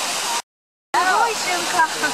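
Steady rushing background noise with onlookers' voices in it; a little under half a second in, the sound cuts out completely for about half a second, a break in the recording, then resumes with more voices.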